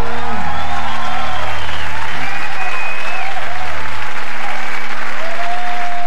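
Audience applauding and cheering, with shouts and whistles over the clapping, while a low held musical note rings underneath and drops out about four seconds in.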